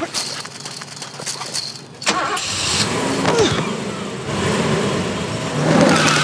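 Clattering for about two seconds, then a car engine starts and runs as a convertible pulls away.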